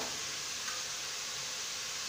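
Steady, even hiss with no other distinct sound.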